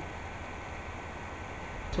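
Steady hiss with a low hum and no other event: the room tone of the recording.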